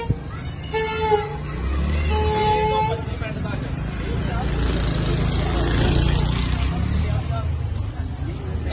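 A vehicle horn honks three times in the first three seconds, each a short steady tone, the last a little longer; after that a loud, even noisy rush takes over, with voices.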